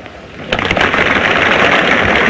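Crowd applauding in an old newsreel recording: a dense patter of clapping that starts about half a second in, right after the president's sentence ends.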